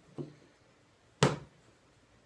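A single sharp knock on a plywood sheet a little over a second in, with a fainter short sound near the start.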